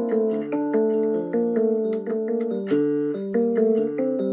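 Portable electronic keyboard played with both hands: held chords under a moving melody, the notes changing every half second or so.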